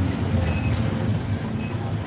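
A vehicle engine running amid street traffic, heard as a steady low rumble.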